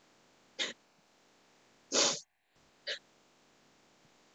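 A woman's sharp, noisy breaths in distress: three quick gasps, the second the longest and loudest. They are heard through a video-call microphone that briefly gates to silence after the second breath.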